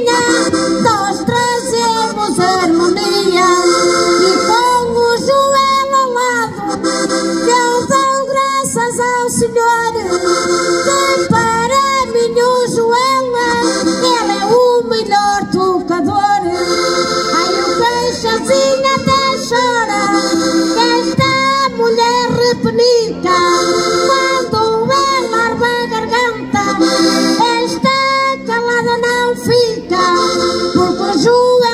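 Diatonic button accordion (concertina) playing a Portuguese folk tune, with a woman singing into a microphone over it, amplified through the stage sound system.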